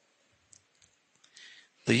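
A pause in a man's speech: near silence broken by a few faint, brief clicks and a soft hiss, then his voice resumes just before the end.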